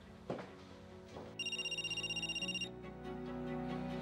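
Background music with one electronic telephone ring in the middle: a fast pulsing trill of high tones lasting just over a second. A short click comes shortly after the start.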